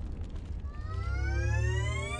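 Sound design for an animated intro: a deep rumble trailing off after a crash, with a rising electronic sweep of several tones climbing together from under a second in.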